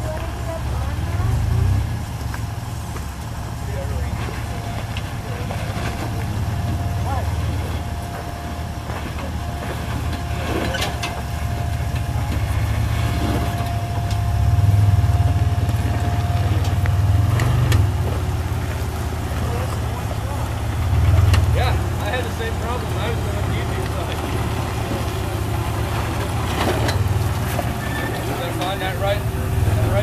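Lifted pickup truck's engine running low and slow under load as it crawls over granite boulders, its note swelling and easing with the throttle. A thin steady whine runs through it, and there are scattered knocks of tyres and chassis against rock.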